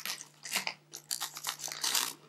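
Scissors snipping across the top of a shiny plastic blind-bag packet: a run of short, crunchy cuts with the packet crinkling in the hand.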